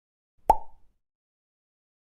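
A single short sound effect about half a second in: a sharp click with a brief tone that dies away quickly.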